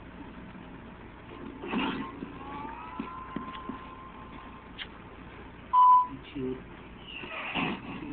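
Cartoon soundtrack playing from a computer's speakers: a thin whistle-like tone slides up and holds for a couple of seconds, then a short, loud beep about six seconds in, with brief noisy bursts before and after.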